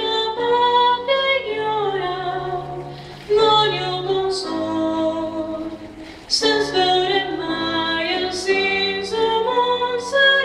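A woman singing solo with piano accompaniment, in long held notes. The phrases fade about three seconds in and again about six seconds in, and each time a new phrase comes in at full voice.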